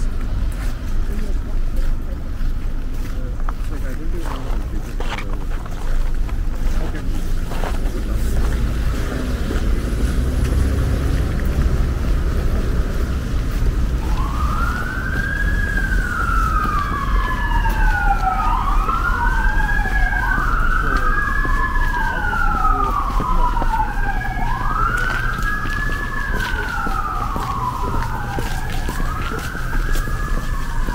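An emergency vehicle's siren starts about halfway in: a wail that rises quickly and falls slowly, repeating every few seconds. It plays over the low, steady rumble of city traffic.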